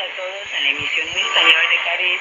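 A voice heard over an AM shortwave broadcast of KBS World Radio's Spanish service, played through the speaker of an Icom IC-R75 receiver. The audio is narrow and band-limited, with a faint steady high-pitched whistle above it.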